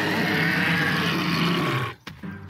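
A tyrannosaur roaring in an animated show: one long, loud roar that cuts off suddenly near the end.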